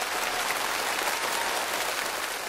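Studio audience applauding, steady and unbroken.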